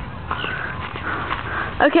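Faint, indistinct voices, then a girl begins speaking loudly near the end.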